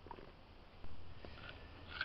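Faint wet sounds of white glue being poured into a ceramic plate and then stirred with a spoon, with a few light clicks and one louder soft knock a little under a second in.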